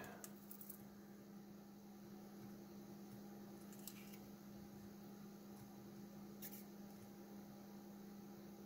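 Near silence: room tone with a faint steady hum and two faint brief ticks, one about halfway through and one near the end.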